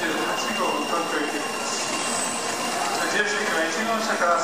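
A Shinkansen bullet train rolling slowly along the platform as it pulls into the station, with a thin steady high whine, under the voices of people on the platform.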